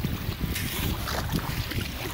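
Kayak paddle dipping and splashing through shallow, weedy water, with wind rumbling steadily on the microphone.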